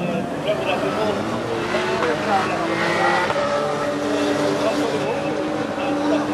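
Race car engines running on the circuit, a steady drone that shifts slightly in pitch, with spectators talking over it.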